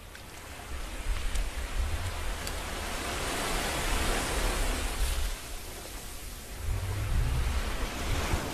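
A recording of sea waves washing in, fading in over the first second or so: a steady hiss of surf with a deep rumble that swells and ebbs twice.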